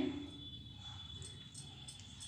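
Faint scraping and a few light clicks of a steel spoon spreading oil over rolled paratha dough on a wooden board.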